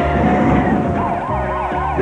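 Upbeat cartoon theme music with a steady bass beat. About a second in, a warbling siren sound effect joins it, its pitch swooping up and down about three times a second.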